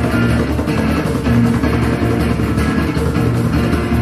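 Live band playing amplified music: electric guitars strummed over drums and bass, at a steady loudness.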